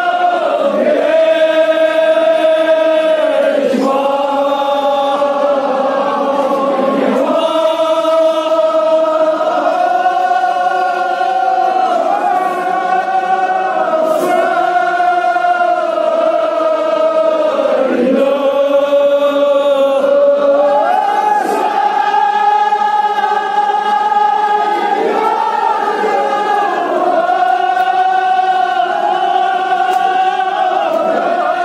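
A congregation of men chanting together in unison, in long drawn-out phrases of a few seconds each, the pitch dipping at the end of every phrase.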